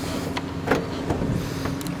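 Steady low hum of a running Ford Explorer SUV, with a few faint clicks over it.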